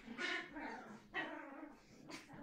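Young puppies yipping and barking in short bursts: one just after the start, another about a second in.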